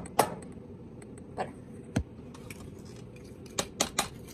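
A few sharp taps and clicks of a utensil against bowls as creamed butter and brown sugar is scraped from a small bowl into the mixing bowl: one just after the start, a couple around a second and a half to two seconds in, and a quick cluster near the end.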